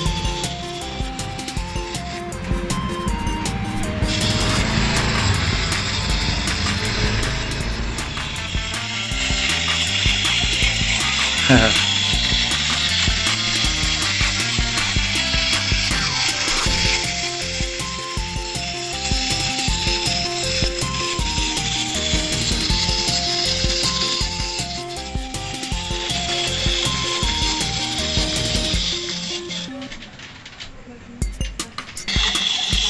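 Background music with a simple stepped melody, over the steady whirring of a small wind-up walking robot toy's clockwork mechanism as it walks on a wooden tabletop. A brief laugh comes in about a third of the way through, and the music stops just before the end.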